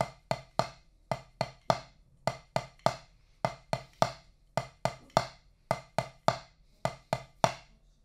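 Wooden drumsticks striking a rubber practice pad, playing a broken sixteenth-note hi-hat pattern at about four strokes a second with short regular gaps, stopping near the end.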